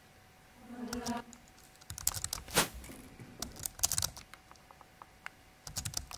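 Computer keyboard keys pressed in quick clusters, with several sharp clacks between about two and four seconds in and a few more near the end. A short pitched hum comes about a second in.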